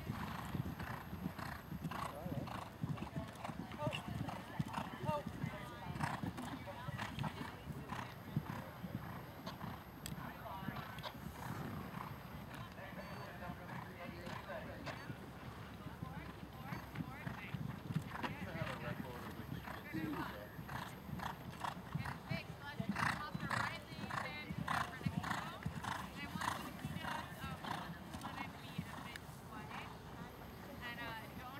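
Hoofbeats of a horse cantering on an arena's dirt footing, a quick run of short thuds.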